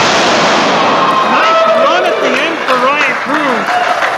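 A wrestler's body slamming onto the wrestling ring mat as a stalling suplex lands, met at once by a burst of crowd cheering and applause that fades over a second or so. Voices carry on after it.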